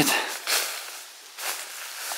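Footsteps through dry fallen leaves on a forest floor, with a couple of louder steps about half a second and a second and a half in.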